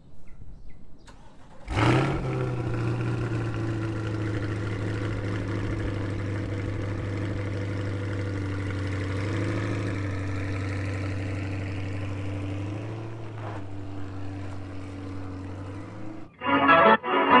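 Chevrolet Corvette C8's V8 engine starting about two seconds in with a brief loud flare, then idling steadily for the rest of the time.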